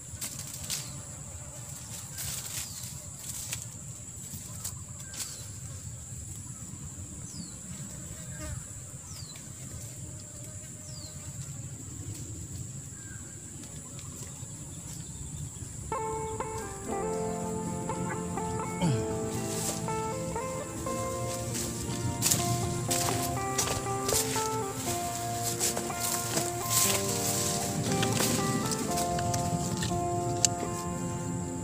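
A steady high-pitched insect drone with scattered clicks and rustles as rope is handled in dry leaves. About halfway through, music with sustained notes comes in and becomes the loudest sound.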